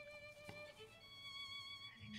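Solo violin playing soft, long held notes, changing to another note about a second in.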